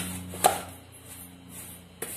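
A gloved hand stirring salt and dry seasoning in a plastic basin: one sharp knock about half a second in, then quieter, fading gritty rustling.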